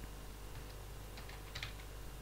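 A few faint computer-keyboard key presses, most of them close together about a second and a half in.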